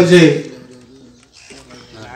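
A man's voice through a microphone speaks a last word and stops about half a second in. A pause follows, with faint low pitched sounds in the background.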